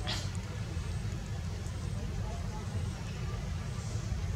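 Steady low outdoor rumble with faint background voices, and a brief noise at the very start.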